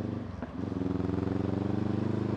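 Honda CB500X's parallel-twin engine running under way, accelerating gently. The note dips briefly about half a second in, then climbs slowly in pitch as the bike gains speed.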